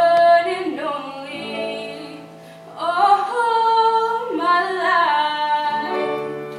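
A high-school women's chorus singing in several voice parts, in two sung phrases: the second, starting about three seconds in, is louder.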